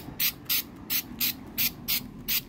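Aerosol can of clear Rust-Oleum LeakSeal rubber sealant sprayed in short, quick bursts, about three a second, laying light coats onto a 3D printed float.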